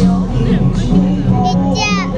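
Live music from an outdoor stage played through a sound system, a sustained low note underneath, with a child's high voice rising and falling briefly near the end.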